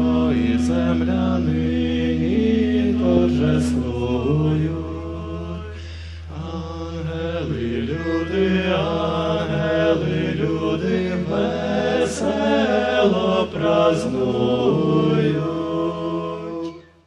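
Ukrainian folk-rock band playing live: a chant-like, wordless melody over a steady low drone, with guitars and bass.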